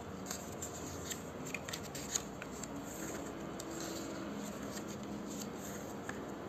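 Paper pages of a small handmade book being turned by hand: crisp rustling with scattered clicks, the sharpest about two seconds in.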